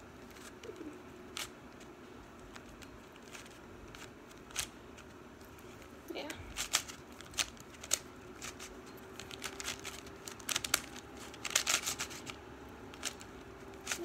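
KungFu dot 3x3 plastic puzzle cube being turned by hand: scattered sharp clicks of its layers snapping round, bunched into quick flurries of turns in the second half.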